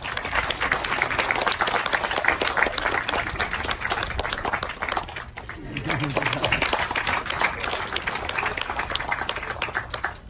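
Crowd applauding, with a voice briefly heard over the clapping a little past halfway.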